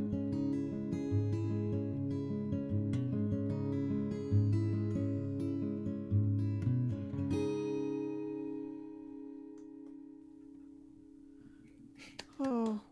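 Acoustic guitar fingerpicking the closing bars of a song, then a final chord about seven seconds in that rings out and slowly fades away.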